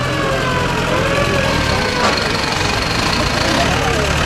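Engines of WWII army jeeps running at low speed as they roll past one after another, a steady low hum. A slow wailing tone fades out in the first second and a half, and there is a sharp click about two seconds in.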